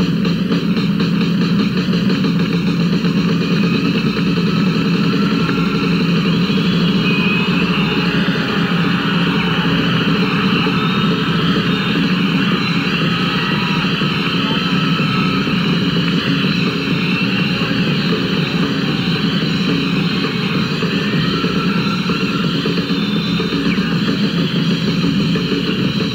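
Rock drum kit in a live drum solo, played as an unbroken roll that comes across as one steady wash of drums and cymbals, with no separate beats standing out.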